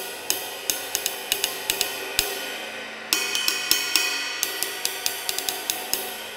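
Hand-hammered 20-inch Landmark Brilliance cymbal played with a drumstick: a steady run of stick strikes, about three to four a second, over a long shimmering wash, with a louder hit about three seconds in.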